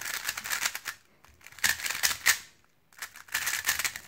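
A GAN Air 3x3 speedcube, a cube cubers call buttery, being turned quickly by hand: its plastic layers clicking and rattling in three short flurries with brief pauses between.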